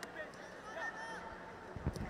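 Faint stadium ambience at a football match: a murmur of distant crowd and player voices with scattered shouts, and low thuds coming in near the end.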